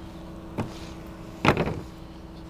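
A kitchen knife cutting through a stick of butter onto a plastic cutting board: a light tap about half a second in and a sharper, louder knock about a second and a half in, over a steady low hum.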